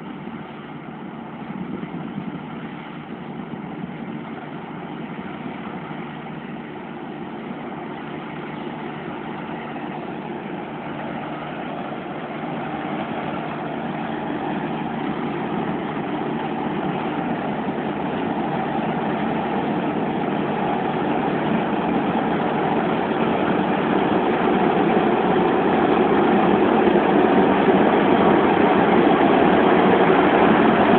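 Claas Mega 204 combine harvester running under load while cutting barley, its engine and threshing machinery a steady drone that grows steadily louder as it approaches and comes close alongside near the end.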